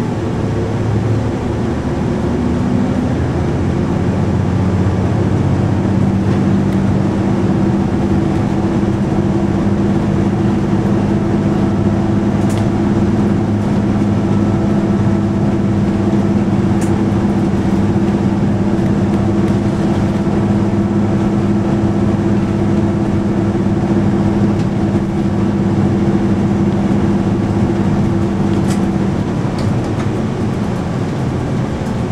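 City route bus cruising, heard from inside the passenger cabin: a steady drone of diesel engine and road noise with a low hum running under it that dies away near the end.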